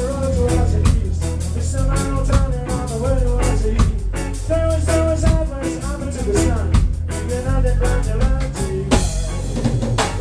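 Ska band playing live: drum kit with rimshots, bass and guitar keeping the beat, and a saxophone and trombone horn section playing the melody line.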